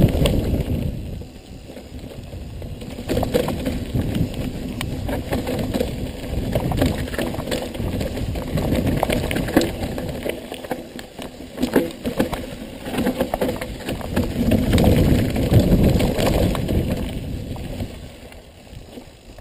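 Mountain bike riding fast down a dirt forest trail: tyre and wind rumble on the camera microphone, with frequent sharp clicks and knocks as the bike rattles over the rough ground.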